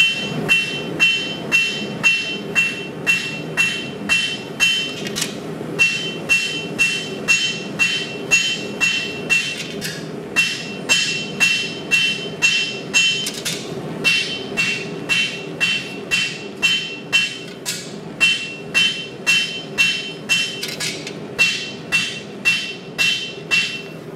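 Hand hammer striking red-hot 80CrV2 steel on an anvil, about two blows a second in runs of several seconds with short breaks between them, and a steady high ring through each run. The smith is drawing down the blade's edge.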